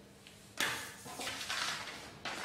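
Handling and movement noise: a sudden scraping rustle about half a second in that fades, then softer rustling.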